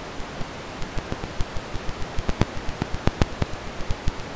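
Steady hiss with irregular sharp crackles and pops, several a second, like the surface noise of an old record or film.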